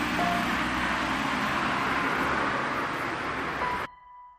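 A dense wash of rushing noise from a layered sound collage, with a few brief tones in it, cut off suddenly just before the end, leaving a single steady high tone.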